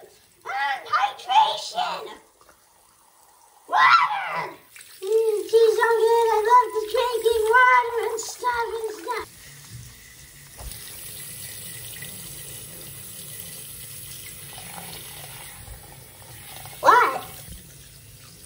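Wordless vocal sounds from a person's voice in the first half, including a sustained sing-song stretch. Then, from about ten seconds in, a steady hiss of tap water running into a sink.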